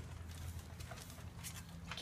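A few faint clicks of a small dog's claws on wooden decking, over a low steady hum.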